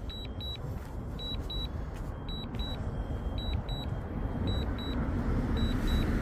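Drone remote controller warning beeps, short high double beeps repeating about once a second while the DJI Mavic Air 2 returns home in strong wind, over a steady rumble of wind on the microphone that slowly grows louder.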